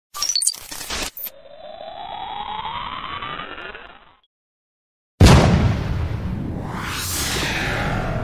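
Synthetic intro sound effects: about a second of crackling digital glitch bursts, then a rising electronic sweep that fades out around four seconds in. After a second of silence comes a sudden loud boom with a long rumble and a rising whoosh.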